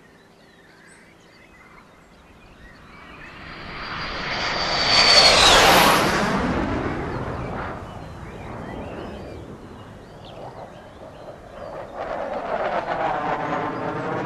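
A jet engine passing at speed: the noise builds to a peak about five seconds in, where its high whine drops in pitch as it goes by, then fades. A second jet noise swells again near the end.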